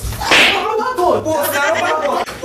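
A loud slap of a hand striking a body about a third of a second in, during a scuffle, followed by shouting voices.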